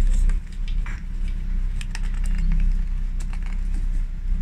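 Small irregular clicks and rattles of a plastic solar-light panel being handled and turned over while she feels for its on/off switch, over a steady low rumble.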